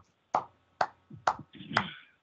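Four hand claps, about two a second, heard over a video-call connection.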